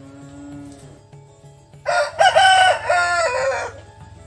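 A domestic rooster crows once, loud, starting about two seconds in and lasting nearly two seconds. Faint background music runs underneath.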